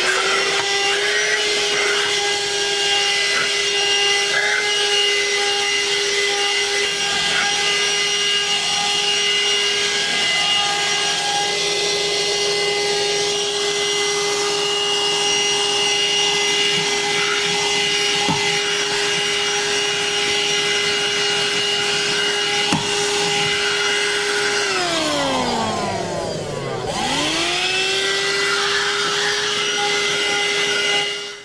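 AGARO Extreme handheld wet & dry car vacuum cleaner running with its nozzle worked directly over seat fabric and floor carpet: a steady high motor whine with a rush of suction air and a couple of brief clicks. Near the end the motor's pitch sinks steeply and then climbs back up to its running speed.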